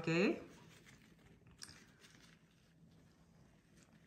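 A voice trails off at the start, then faint, soft handling sounds with a few light ticks: gloved hands pulling sticky jackfruit bulbs from the fruit.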